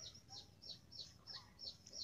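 A bird's faint, repeated chirping: a steady run of short, falling chirps, about three a second, over near silence.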